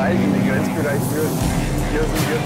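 Cabin sound of a BMW M3's twin-turbo straight-six running steadily at track speed, with road noise.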